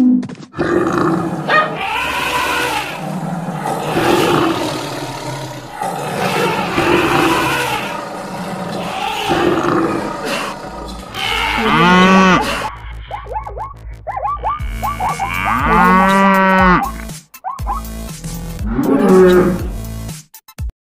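Stampede sound effects of a mixed animal herd, with cattle mooing above a dense jumble of other animal calls. In the second half, three long, loud moos stand out, with shorter calls between them.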